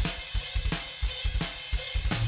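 Rock drum kit from the film's soundtrack playing a steady beat on its own, about three hits a second: kick, snare, hi-hat and cymbals.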